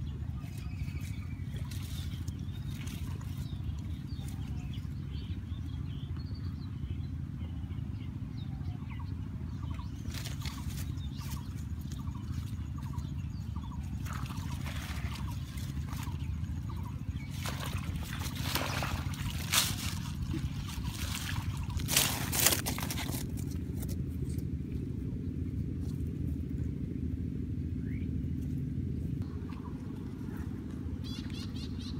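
Water sloshing and water-hyacinth leaves rustling as a person wades through a weed-choked canal, over a steady low rumble. A few louder splashes come about twenty seconds in.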